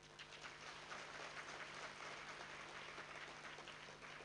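Faint audience applause, an even patter of many hands clapping, over a steady low hum.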